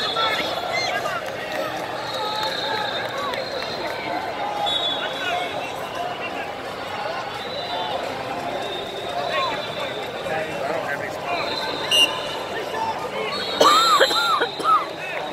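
Arena crowd noise: many overlapping voices chattering and calling out in a large hall, with a few brief louder shouts near the end.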